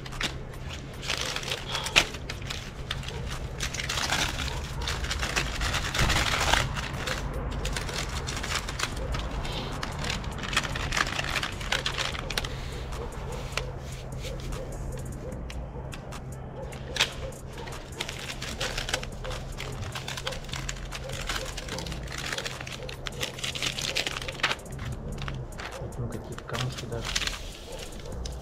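Paper packets rustling and crinkling as they are opened and loose makhorka tobacco is shaken out onto a sheet of newspaper, with many small crackles and taps. A steady low hum runs underneath.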